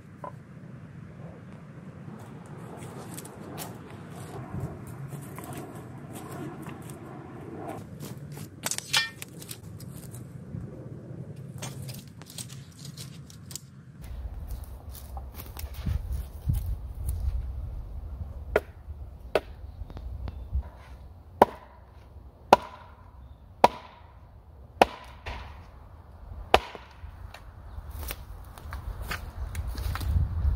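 Rustling and handling of wood and brush, then, from about halfway, a stake being pounded into the ground with a piece of wood used as a mallet: a run of sharp knocks, roughly one a second.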